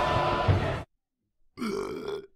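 A censor bleep, one steady beep tone, over a loud harsh blast that cuts off suddenly just under a second in. After a brief silence, a short grunt-like voice sound comes near the end.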